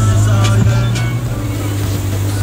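An ATV engine running with a steady low drone.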